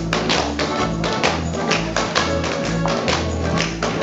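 Alpine folk dance music with an oom-pah bass alternating between two notes, overlaid by sharp taps and stamps of the dancers' shoes on the stage in time with the beat.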